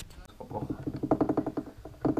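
An indistinct person's voice with no clear words, pulsing quickly, in a small, acoustically treated room.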